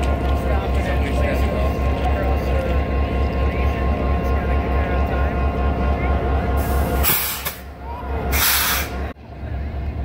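Diesel locomotive idling close by, a steady low beat with steady tones over it. About seven seconds in, two loud hisses of air, each under a second long, as the low beat falls away; the sound drops off suddenly just after.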